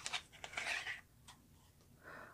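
Small paperboard product box being opened and a tube slid out of it: a short stretch of scraping and rustling cardboard in the first second, then near silence with one faint click.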